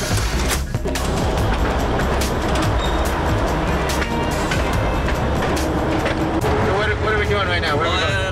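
Russian-built diesel locomotive's engine running loudly as it moves off along the track, a heavy steady rumble heard from inside the cab. A man's voice comes in over it near the end.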